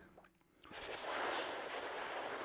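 A long, steady hissing in-breath drawn through a rolled tongue (Shitali breathing, inhaling against resistance), starting about half a second in.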